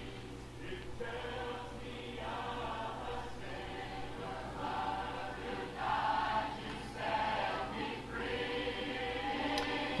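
Faint choir singing: soft, sustained, overlapping voices that swell slightly a few times, over a steady low hum.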